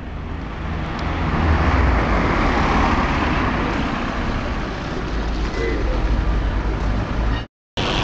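Street traffic noise: a road vehicle passing close by, its engine and tyre noise swelling to a peak a couple of seconds in and then easing off, over a steady low rumble. The sound cuts out briefly near the end.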